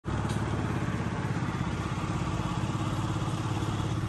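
Motorbike engine running steadily while riding along, a low, evenly pulsing note heard from the saddle.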